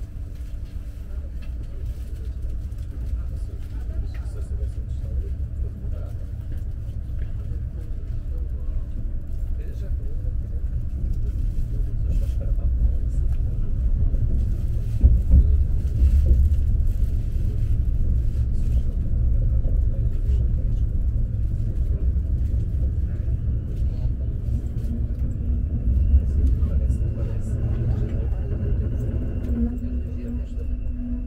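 Running noise of an Alfa Pendular electric tilting train heard from inside the carriage: a steady low rumble of wheels on the track with faint scattered clicks, swelling louder midway. Near the end a faint steady whine joins in.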